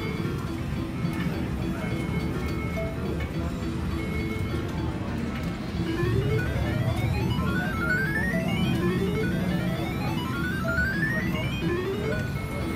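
Cleopatra Keno machine's electronic draw sound effects: from about halfway in, runs of short beeps that step steadily upward in pitch as the numbers are drawn, three runs in all. Steady casino background noise lies under them.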